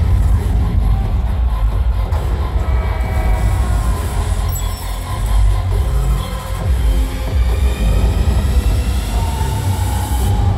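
Loud music with a heavy, deep bass rumble from an arena sound system, playing the soundtrack of a projected player-introduction video, with the reverberation of a large hall.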